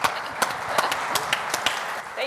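Audience applauding at the end of a talk, a quick irregular run of sharp individual claps.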